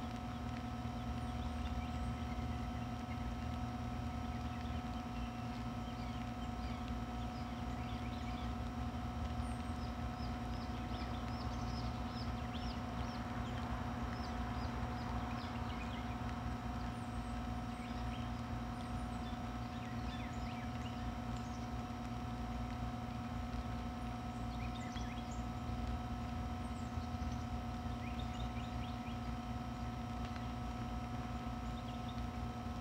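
A steady mechanical hum with several fixed tones and a low rumble runs throughout, with many faint, short bird chirps scattered over it, busiest in the middle of the stretch and again near the end.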